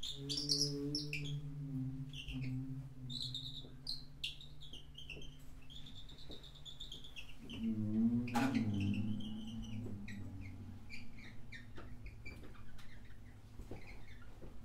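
Improvised acoustic music from a piano, percussion and harp trio: scattered high chirping squeaks over low held tones. The loudest moment is a swooping low sound with a sharp strike just past eight seconds in.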